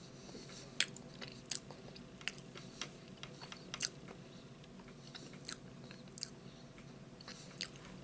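Close-miked chewing of a Frosted Strawberry Milkshake Pop-Tart, with irregular crisp crunches and mouth clicks, the sharpest about a second in.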